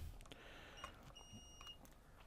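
Near silence broken by faint high beeps from a digital multimeter's continuity buzzer: a short blip just under a second in, then a beep of about half a second. The beeping is the meter signalling a short circuit across its probes on the power board.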